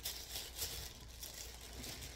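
Faint crinkling and rustling of paper packaging being handled and opened.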